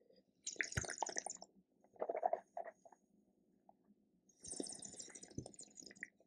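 Wine being slurped with air drawn through it, about half a second in and again near the end, with wet swishing of the wine in the mouth in between.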